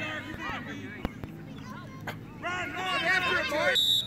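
Excited shouting voices of spectators at a youth lacrosse game, with a single sharp clack about a second in. The shouting swells in the second half and cuts off suddenly near the end.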